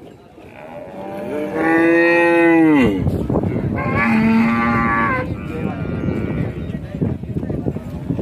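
Cows mooing. A long, loud moo begins about a second in and drops in pitch as it ends, and a second, shorter moo comes around four seconds in.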